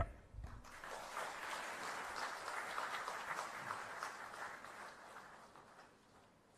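Audience applauding at the end of a speech, a dense patter of clapping that builds within the first second, holds, and fades out near the end.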